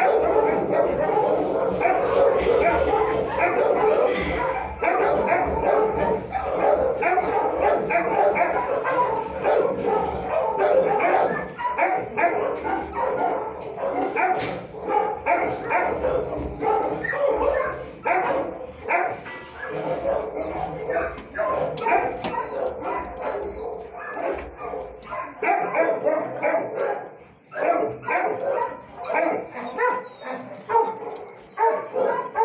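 Many dogs in a shelter's kennel block barking at once, a dense, continuous din of overlapping barks that thins slightly near the end.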